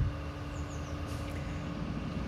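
Steady low rumble of distant city traffic, with a faint steady hum under it.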